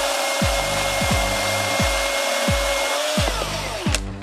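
Milwaukee M18 FCHS FUEL cordless brushless chainsaw cutting through a log: a steady high whine from the motor and chain over the rasp of wood being cut. About three seconds in the trigger is released and the whine winds down.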